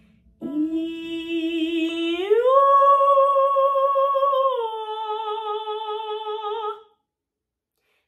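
A woman singing a registration exercise: a held note on "ee" that slides up a major sixth into "oo" about two seconds in, holds, then slides down onto "ah" about four and a half seconds in before stopping near the end. The continuous slides carry the voice from chest toward head voice and back without a break.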